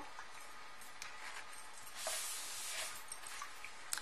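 Quiet handling of a plastic portable water flosser with its water tank fitted: a soft click about a second in and a brief soft swish around the middle.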